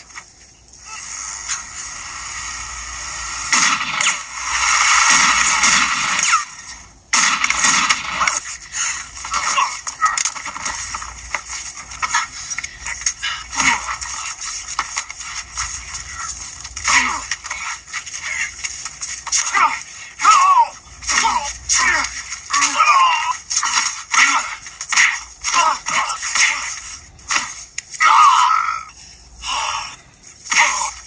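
Action-scene film soundtrack played through a television speaker: music mixed with voices and many short sharp hits and crashes.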